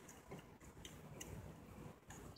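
Near silence, with a few faint small clicks as the plastic cap is pushed back onto the car's A/C low-pressure service port.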